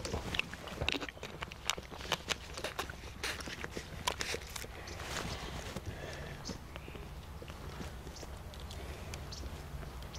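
Horses' hooves knocking and thudding irregularly on turf, busiest in the first half, over a steady low rumble.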